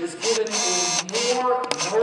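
A voice chanting, holding steady pitches for about half a second at a time.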